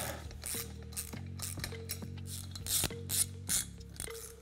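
Small socket ratchet clicking in short, uneven strokes as it runs down the self-locking flanged nuts (8 mm thread, 10 mm across flats) that hold a SIP BFA 306 Vespa cylinder to the engine case.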